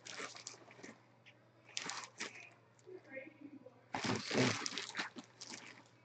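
Clear plastic bag around a shirt crinkling as it is handled, in short bursts, with the longest and loudest stretch about four seconds in.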